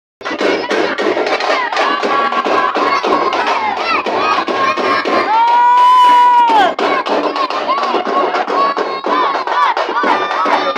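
Fast, steady drumming accompanying a silambam stick-fighting display, under loud shouting and calls from the crowd. About five seconds in, one long high note is held for over a second.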